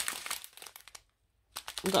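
Small clear plastic bag of square resin diamond-painting drills crinkling as it is handled, a quick run of crackles that fades out within about half a second.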